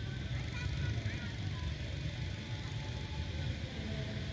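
Steady low outdoor rumble, with a few faint, short high chirps about a second in.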